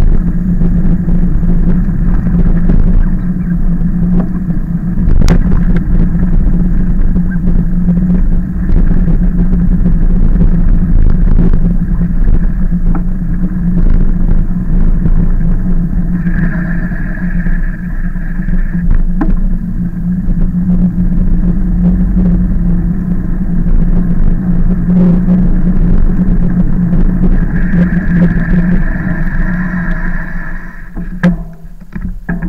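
Ride noise of a moving e-bike picked up by a camera mounted on the bike: a steady low drone over road rumble and wind on the microphone, with a couple of sharp knocks from bumps. A higher steady tone joins for a few seconds about sixteen seconds in and again near the end.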